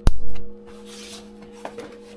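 Toggle of a CHINT CB-125A DC miniature circuit breaker worked by hand: a sharp snap right at the start with a heavy low thud at once, then a brief rub and a second small click near the end. A steady low hum runs underneath.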